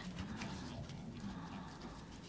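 Quiet room tone with a faint, low, wavering murmur during a pause in the speech.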